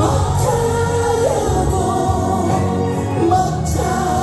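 A man singing a Korean trot song through a microphone over an amplified karaoke backing track. One note is held for about a second near the start, then the melody steps up.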